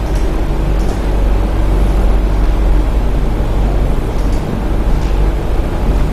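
A steady, loud low hum running without a break, with a few faint soft clicks over it.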